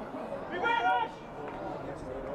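The low background noise of a small football crowd at a floodlit ground, with one short word from a man's raised voice about halfway through.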